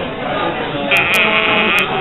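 A woman's high-pitched, quavering vocal sound, starting about a second in and lasting about a second, over the murmur of a busy pub.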